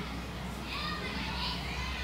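Indistinct chatter of children's voices in the background, with a high burst of voices about a second in, over a steady low hum.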